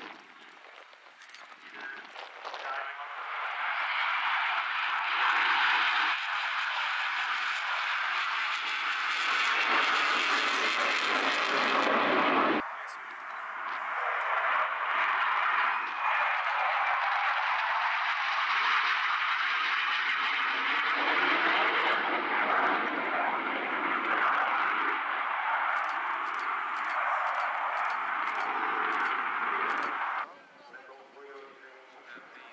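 Jet noise from a Sukhoi Su-27UB's twin AL-31F turbofan engines during takeoff and low flight: a loud, even rush that builds over the first few seconds. It drops out abruptly about twelve seconds in and resumes at once, and near the end a quick run of faint clicks rides over it.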